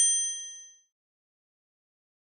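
A bright, bell-like ding sound effect rings out with several high tones and fades away within the first second.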